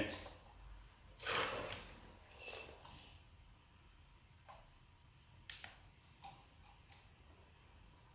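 A plug, its cable and a small plastic electrical box being handled: a brief rustle just over a second in, a shorter one around two and a half seconds, then a few light clicks and taps spread through the rest.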